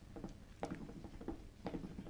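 A pause in speech: quiet room sound with three faint, short clicks or taps about half a second apart.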